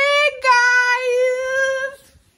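A woman's voice holding one long, high, loud note, an open-mouthed 'aaah' with a brief break about a third of a second in.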